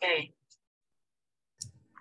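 Over online call audio, a spoken word trails off, then the line goes silent until a short click about a second and a half in.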